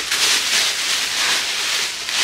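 Plastic rustling and crinkling as items are handled and pulled out of a bag.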